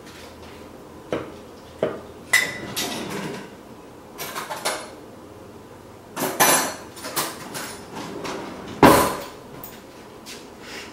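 Blender jar knocking and clinking against glass tumblers as thick strawberry puree is poured out of it: a string of irregular knocks, one with a short glassy ring, the loudest near the end.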